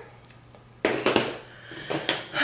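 Brief handling noise about a second in: a short rustle with a few sharp clicks, then a smaller one near the end.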